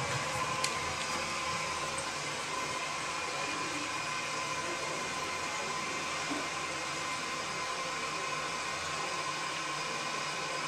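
Gerber Aquasaver toilet refilling after a flush: a steady hiss of water through the tank's fill valve, with a faint steady whine and a small click about half a second in.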